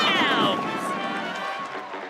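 A voice slides down in pitch in the first half second. Then comes a dense, dry rattle of many small pieces, dry cereal pouring out of a box.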